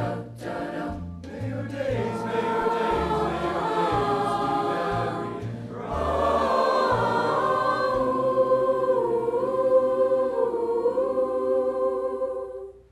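Mixed high-school choir singing sustained chords, growing louder about six seconds in.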